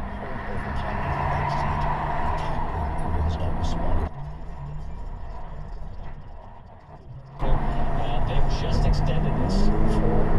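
Car cabin noise while driving on a freeway: a steady engine and road hum with tyre noise. It grows quieter for a few seconds in the middle, then comes back louder, with a rising tone near the end as the car speeds up.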